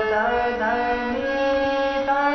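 Harmonium played with a run of changing notes over a held lower note, a finger-speed alankar exercise.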